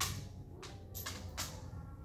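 A sharp click, then three or four more short clicks in quick succession over a steady low room hum.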